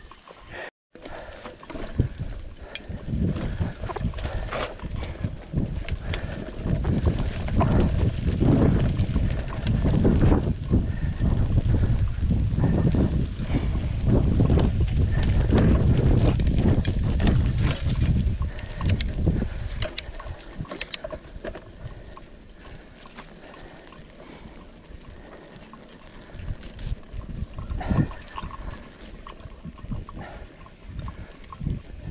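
Mountain bike riding down a rough dirt singletrack: deep rumbling wind noise on the action camera's microphone, with the bike clattering and clicking over bumps. The ride is loudest through the middle, then eases off and goes quieter in the last third.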